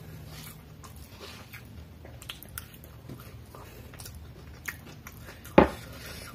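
Close-miked chewing of a mouthful of chowmein noodles, with scattered small wet clicks and a fork working the noodles on the plate. A single sharp knock near the end is the loudest sound.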